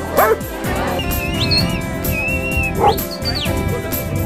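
A dog barks twice near the start, then music with steady held notes carries on.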